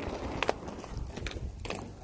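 Skate wheels rolling over pavement: a low rumble with scattered irregular clicks.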